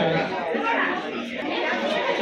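Several people talking at once, a continuous babble of overlapping voices with no single clear speaker.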